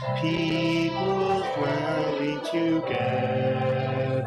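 A congregation sings a slow hymn with instrumental accompaniment, holding long notes that change every half second or so.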